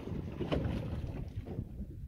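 Wind buffeting a phone microphone on a small boat at sea, over the rush of choppy water: a rough, steady low noise with a few faint knocks.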